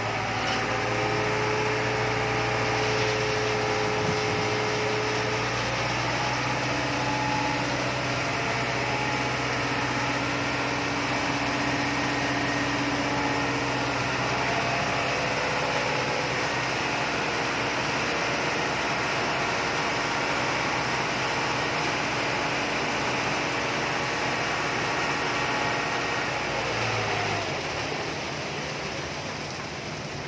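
Heavy diesel engine running steadily while concrete is discharged down a mixer chute into a tremie hopper; about 27 seconds in, the engine slows and the sound drops.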